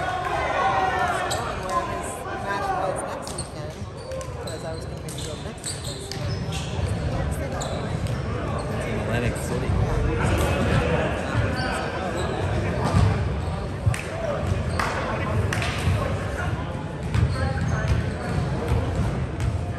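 Indistinct voices of volleyball players talking in a large, echoing gym, with scattered sharp knocks of balls bouncing on the hardwood court.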